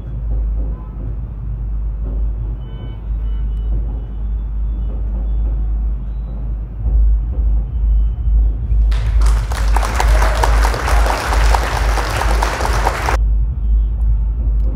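A steady deep rumble of a background audio bed with no voice. About nine seconds in, a loud hissing noise with fine fast ticks starts, runs about four seconds and cuts off suddenly.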